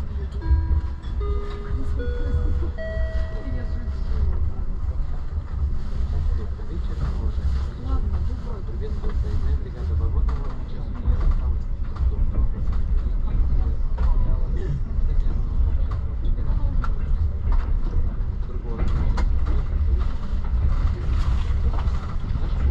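Passenger train coach running at speed, heard from inside at the window: a steady low rumble with scattered clicks of the wheels over rail joints. In the first few seconds a short sequence of four tones rises step by step.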